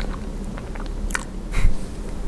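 Close-miked chewing with the mouth closed: a run of small wet mouth clicks, a louder crackle just past a second in, and a dull low thump about a second and a half in.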